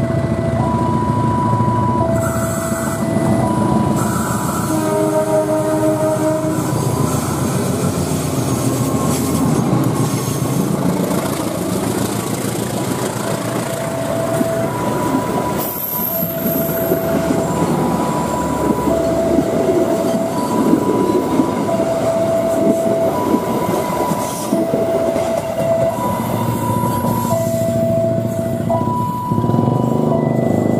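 Locomotive-hauled passenger train passing close: a diesel locomotive sounds its horn for about two seconds around five seconds in, then the engine and the coaches' wheels rumble by on the rails. Throughout, a warning signal alternates between a high tone and a low tone about once a second.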